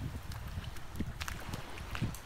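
Wind rumbling on the microphone, with a few brief, sharp calls from a flock of royal terns about a second in.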